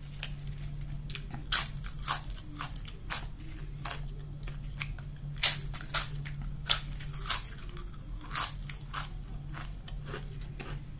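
Potato chips being bitten and chewed: a run of sharp, irregular crunches, the loudest about one and a half, five and a half and eight and a half seconds in.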